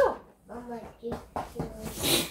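Soft wordless voice sounds after a short lull, with a couple of faint taps.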